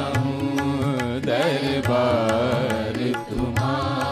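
Live Indian devotional song in thumri style: a gliding, ornamented melody line over a steady low drone, with regular tabla strokes.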